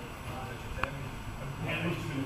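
Town-centre street ambience: indistinct voices of passers-by over a low steady rumble, with one sharp click just under a second in.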